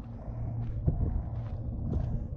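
Footsteps of a hiker walking on a rocky dirt trail, two scuffing steps, over a low steady rumble.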